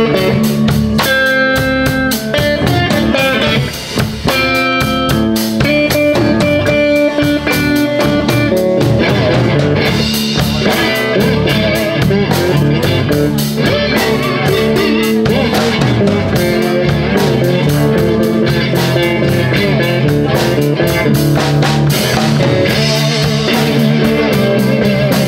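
Live blues band playing an instrumental passage: electric guitars over a drum kit. Held guitar notes in the first several seconds give way to busier playing from about nine seconds in.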